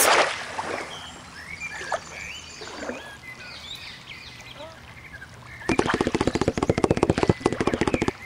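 Birds chirping in a quiet outdoor ambience. About three-quarters of the way in, a louder, rapid, even clicking rattle cuts in and keeps going for about two seconds.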